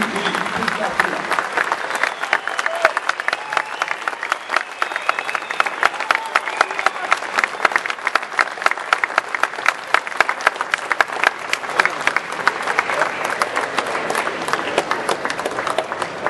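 An audience applauding at the close of a speech: dense, continuous clapping from many hands, with crowd voices underneath.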